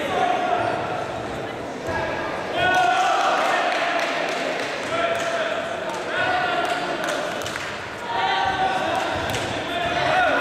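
Voices calling and shouting in a large sports hall, in several stretches, with scattered thuds and slaps of taekwondo fighters' feet on the foam mats and kicks on protectors.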